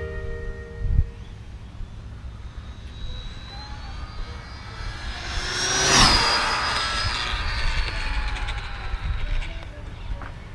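Arrma Infraction V2 RC car on a 6S battery making a high-speed pass: the brushless motor and drivetrain whine rises as it approaches, peaks as it goes by about six seconds in, then drops in pitch as it speeds away. Wind rumbles on the microphone throughout.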